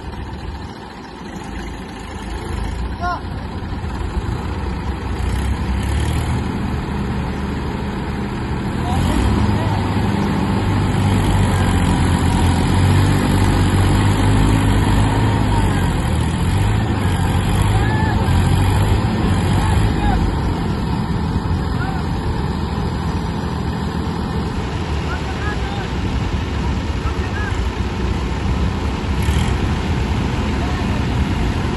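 Tractor diesel engines, a Massey Ferguson 9500 and a New Holland 3032, working hard under load while trying to tow a tractor bogged in deep mud. The engine sound builds over the first few seconds and is loudest from about 9 to 20 seconds in, then eases slightly.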